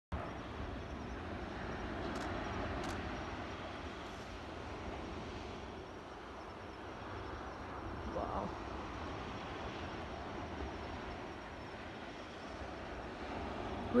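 Steady wash of surf breaking on a sandy beach, with a low wind rumble on the microphone. A short faint sound rising and falling in pitch comes about eight seconds in.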